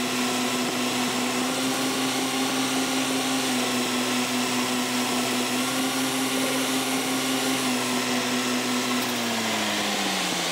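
Metal lathe running with a steady motor whine as a boring tool cuts inside the threaded breech end of a steel rifle barrel. Near the end the whine starts to fall in pitch as the spindle slows.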